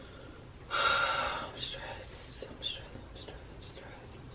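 A woman's short, breathy whisper about a second in, followed by a few faint, small, high squeaks and ticks.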